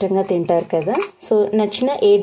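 A person's voice talking, with short pauses between phrases.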